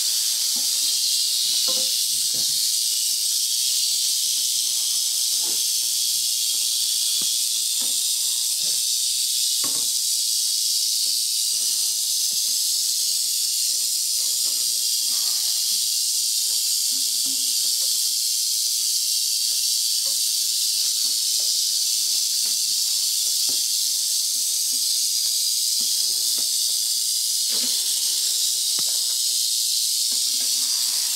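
Western diamondback rattlesnake rattling continuously, a steady, even, high-pitched buzz that never lets up. Faint scattered knocks sit underneath it.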